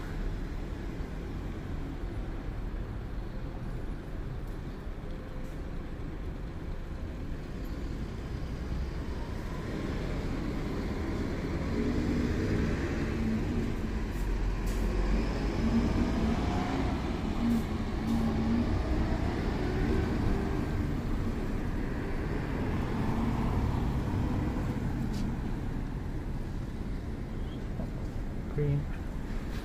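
Street traffic passing on a city road: a steady rumble of vehicles. Through the middle it grows louder as an engine passes with a slowly shifting pitch, then eases off near the end.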